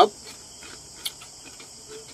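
Quiet mouth sounds of chewing, with one short sharp click about a second in, over a steady high-pitched tone in the background.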